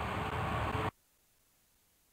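Steady low hiss of microphone and room noise that cuts off abruptly about a second in, leaving dead silence: an audio dropout.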